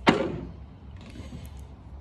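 A single sharp knock right at the start, fading out over about half a second, as the soft wash gun's hose and fittings are picked up and handled.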